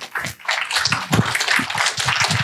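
Audience applauding, starting right at the beginning and keeping up a steady patter of many hands.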